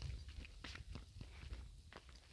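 Faint crackling of dry leaves and twigs as people move through dry scrub, a few scattered crunches.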